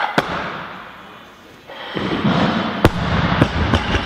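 A barbell loaded with Eleiko bumper plates is lifted and dropped onto a weightlifting platform in a large hall. A landing thump comes right at the start. About two seconds in the bar hits the platform, and then it bounces and rattles, with sharp metal clacks near the end.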